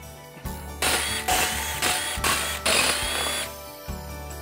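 Impact wrench run in about five short bursts, spinning out the already broken-loose bolts that hold a motorcycle's rear belt pulley to the wheel; its motor whine rises and sags with each burst.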